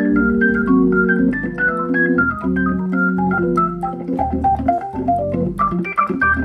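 Hammond console organ being played: held chords underneath, with a quick line of short melody notes above that falls in the middle and climbs again near the end.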